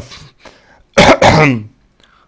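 A man clearing his throat once, about a second in, with a short rasping onset that drops into a lower voiced sound.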